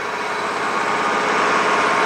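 Citroen C4's 1.6-litre petrol engine idling steadily, growing a little louder.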